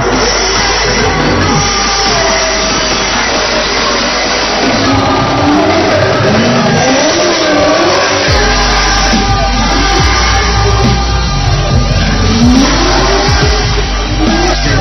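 Formula Drift cars' engines revving hard through a tandem drift battle, the engine notes climbing and dropping several times as the drivers work the throttle.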